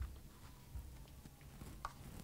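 Kitchen knife chopping fresh mint on a wooden cutting board: a few faint, soft knocks of the blade on the wood.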